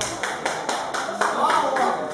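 Hand clapping, quick and uneven, with a voice calling out briefly near the end.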